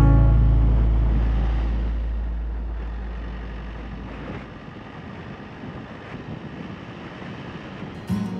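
Background music dying away over the first four seconds or so, its low notes fading out. Under it is the steady road noise of a moving motorhome, which carries on alone once the music is gone.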